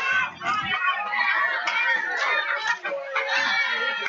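Football crowd yelling and cheering, many voices overlapping at a steady, loud level.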